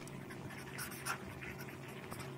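A marker pen writing on paper, faint short scratching strokes. A steady low hum runs underneath.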